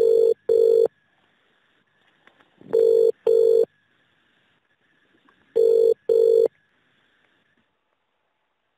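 Telephone ringing tone heard down a phone line: three British-style double rings, one pair about every three seconds, as the call is put through.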